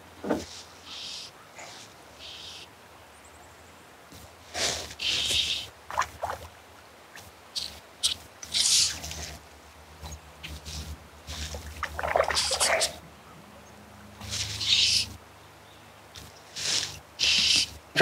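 Fly line being stripped in by hand through the rod guides while playing a hooked trout: a series of short, hissing zips, spaced irregularly a second or more apart.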